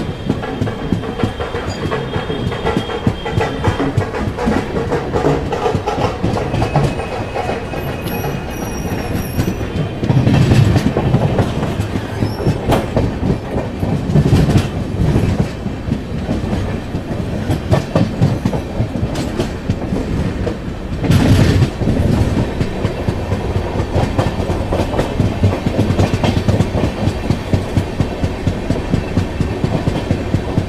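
Passenger train running along the track, heard from an open door of a coach: a steady rumble of wheels on rail with clickety-clack over the rail joints, and a few louder stretches of clatter about ten, fourteen and twenty-one seconds in.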